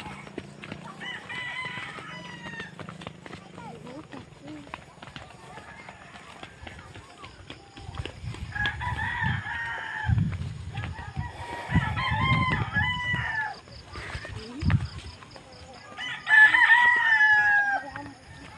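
Rooster crowing four times, each crow one to two seconds long, the last and loudest near the end. Low muffled bumps come in the middle.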